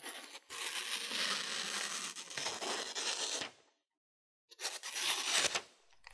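Freshly sharpened pocket knife blade, a Benchmade Bailout reprofiled to a drop point, slicing through a glossy magazine page: a paper-cutting test of the new edge. One long slicing stretch of about three seconds, then a second, shorter cut past the middle; the cut is smooth.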